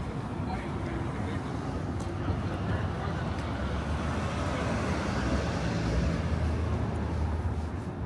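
City street traffic: a vehicle's low rumble grows, is loudest about five to six seconds in, then eases off.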